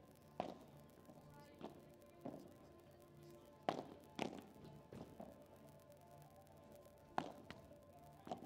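Padel balls struck with rackets in a warm-up hit, about eight sharp pops at uneven intervals, the loudest near the middle and near the end, over faint background music.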